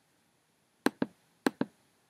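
A computer mouse clicked twice, about half a second apart. Each click is a quick pair of sharp clicks as the button is pressed and released, typical of advancing through presentation slides.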